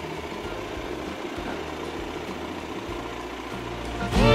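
Cordless electric mop (Xiaomi) running with a steady low motor hum.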